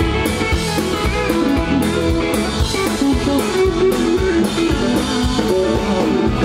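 Live sertanejo band playing an instrumental passage: electric guitar over a drum kit keeping a steady beat, with a fiddle among the instruments.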